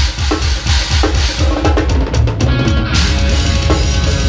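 Technical death metal band coming in with a loud hit right at the start, then playing at full tilt: rapid bass drum, sharp cymbal and snare strikes over distorted guitars, with the drum kit loud in the mix.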